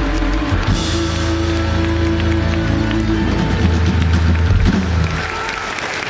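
A live rock band playing loudly, heard from within the audience; the song ends on long held low chords about five seconds in, and the crowd starts applauding.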